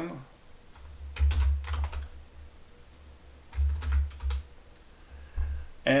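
Computer keyboard keys typed in two short bursts, about a second in and again around four seconds, each burst with low thuds under the clicks, then one more keystroke near the end.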